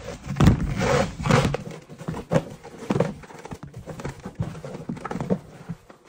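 Folded paper slips rustling and shuffling as a hand stirs through them in a clear plastic bin. The handling is loudest in the first second and a half, then turns to softer, scattered rustling.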